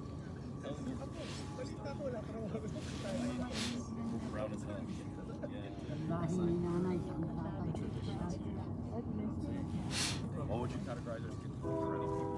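Low murmur of voices from a small outdoor gathering over a steady low rumble, with a few sharp clicks. Near the end a train horn starts sounding: a steady chord of several tones that goes on past the end.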